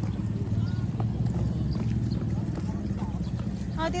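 A steady low engine-like rumble with a fast pulse, running without change.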